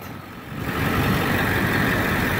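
A Ford 7.3 L Power Stroke V8 turbodiesel in a 1999 F250 pickup idling steadily.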